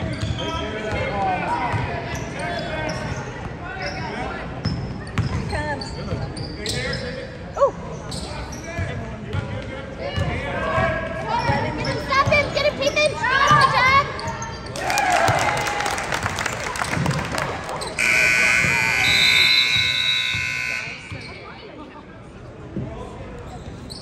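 Basketball being dribbled on a hardwood gym floor amid crowd voices. About eighteen seconds in, the scoreboard buzzer sounds steadily for about three seconds as the clock runs out on the period.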